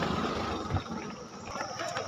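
Outdoor street background noise: a low steady rumble with a couple of faint short knocks.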